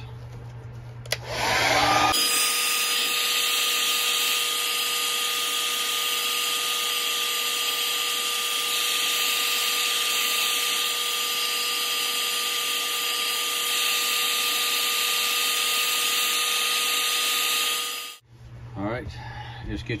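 Hair dryer blowing steadily, a rush of air with a steady whine running under it. A click comes just before it starts about two seconds in, and it cuts off about two seconds before the end.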